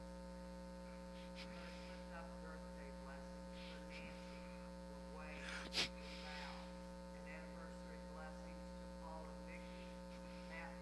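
Steady electrical mains hum under faint, distant murmured voices, with one sharp click about six seconds in.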